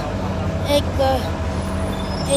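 A vehicle engine running steadily in street traffic, a continuous low drone.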